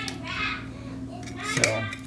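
P-51 can opener's small hooked blade cutting its way around the rim of a tin can lid: short metallic scrapes and clicks, with a sharp click about a second and a half in.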